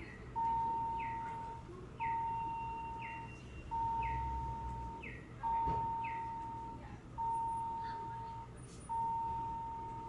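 Dover elevator hall lantern bell for the up direction, sounding one steady single-pitch ding at a time, six times about every 1.7 seconds, each ring starting sharply and fading over about a second. It is being re-triggered over and over while the car waits with its doors open, before the doors begin nudging.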